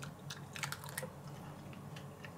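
A man biting into and chewing a smoked sausage: faint, irregular crisp clicks and mouth sounds.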